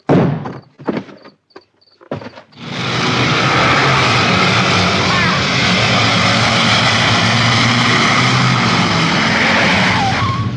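A few sharp knocks and thuds, then from about two and a half seconds in the loud, steady running noise of an armoured military vehicle's engine, from a war-film soundtrack.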